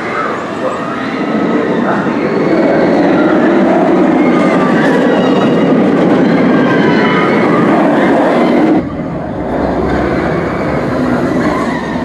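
Bolliger & Mabillard inverted roller coaster train running over its steel track close by: a loud, steady rumble that builds over the first two seconds. About nine seconds in it cuts off abruptly to a quieter, lower rumble.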